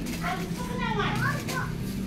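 A faint, high-pitched voice talking in the background over a steady low hum.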